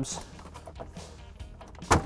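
A single sharp snap near the end, as a retaining tab of the plastic center dash trim panel pops free under a pried flat-blade screwdriver.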